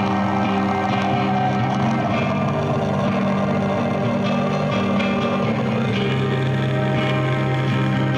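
Blackened death metal recording without vocals: sustained, droning guitar chords, with one pitch line that slowly falls over the first six seconds.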